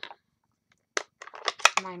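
A few sharp clicks and handling noises from hard plastic craft supplies, a stamp block and an ink pad case, being picked up and set down on a work mat. A woman starts speaking near the end.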